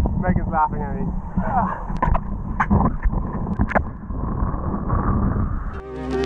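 Strong wind buffeting an action camera's microphone, a continuous low rumble, with a man's short wordless vocal sounds in the first couple of seconds and a few sharp clicks later on.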